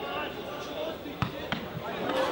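Two sharp thuds of a football being struck, about a third of a second apart, a little past halfway, over players' shouts on the pitch.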